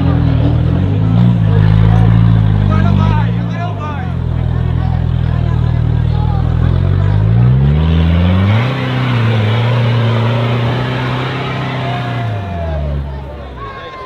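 Off-road 4x4's engine working hard under load as the vehicle climbs out of a steep sand trench: revs held, then rising sharply a little past the middle and dropping away near the end. Crowd voices chatter over it.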